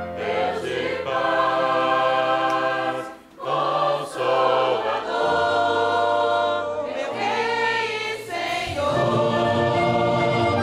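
A congregation singing a hymn in Portuguese together, in long held notes, with the church band's keyboard and instruments underneath. The singing drops away briefly about three seconds in, then carries on.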